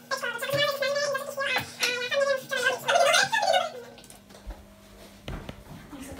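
A high-pitched, squeaky voice chattering in quick phrases with no clear words for about four seconds. After that it goes quieter, with a few soft knocks.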